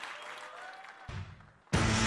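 Audience applauding, dying away, with a low thump about a second in; then music cuts in loudly near the end.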